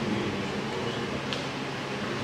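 Steady low hum of a meeting room's background noise, with faint murmured voices in the hall.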